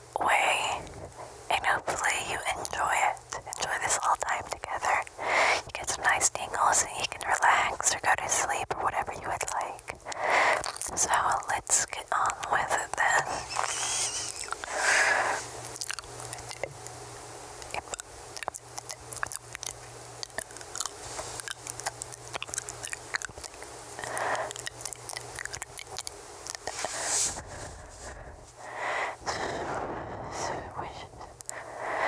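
Close-miked unintelligible whispering, soft breathy words with no clear speech, scattered with small wet mouth clicks. The whispering softens for several seconds just past the middle, then picks up again.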